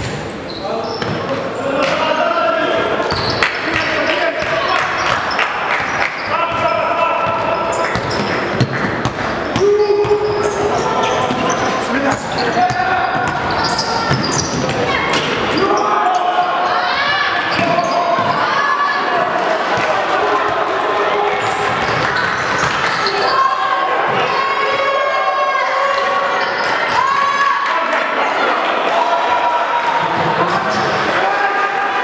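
Basketball game play: a ball being dribbled and bounced on the court floor, with indistinct voices of players and spectators calling out over it.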